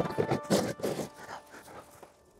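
Background music dying away at the end of a track: its last notes stop right at the start, and a few soft irregular rustles and knocks follow and fade out within about a second.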